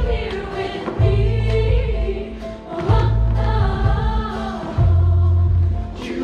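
Show choir singing in harmony over a live band, with three deep bass notes, each held for about a second.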